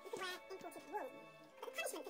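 Television programme sound: background music with a voice, and a short rising-and-falling whine about halfway through.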